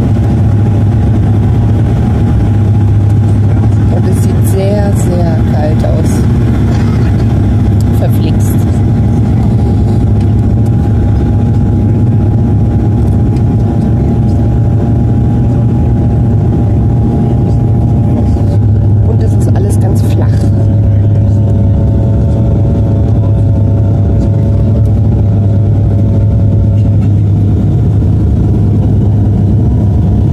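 Steady, loud drone of a turboprop airliner's engines and propellers heard inside the cabin during descent with the landing gear down. A low hum runs under several steady tones, and the tones step to new pitches about two-thirds of the way through as the power setting changes.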